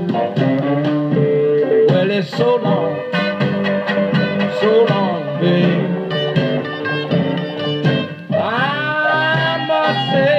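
A 1950s Chicago blues record playing from a vinyl 45 on a turntable, in a passage without lyrics: the band of harmonica, slide and electric guitar, piano, bass and drums. Near the end a strong held note slides up in pitch.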